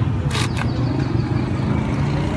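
Steady low rumble of street traffic, with a short hiss about half a second in.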